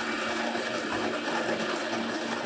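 Electric conical burr coffee grinder (Fellow Opus) running steadily, grinding a dose of coffee beans, with a constant motor hum.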